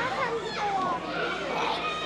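Young children's voices chattering and calling out over one another, with adult speech mixed in.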